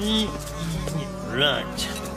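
Cartoon background music with held notes, over two short non-verbal vocal sounds from a man: one at the start and one about one and a half seconds in.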